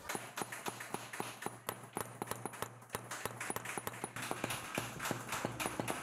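Small hammer tapping a steel chasing punch along a copper sheet set in rosin pitch: rapid, uneven metallic taps, several a second, as the lines of a design are chased into the copper.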